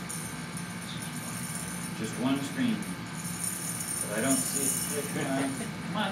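Hand-held tambourine jingles shaken lightly, a thin high shimmer that swells about four seconds in, with a low voice briefly heard under it.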